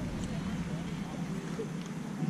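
Faint voices talking in the background over a steady outdoor hum, with no one close by speaking.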